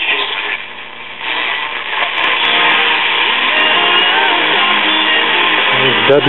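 A 1939 Zenith 4K331 battery tube radio being tuned across the AM band: about a second of hiss and static, then a station comes in playing guitar music through its speaker.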